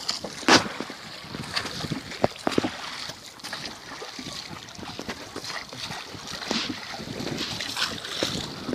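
Water splashing against the hull of a small wooden boat under way, with irregular sharp knocks and wind on the microphone.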